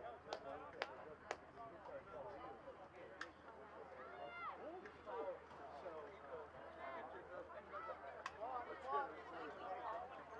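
Indistinct voices of people at a soccer game, several talking and calling at once without clear words, with a few sharp knocks in the first seconds and one near the end.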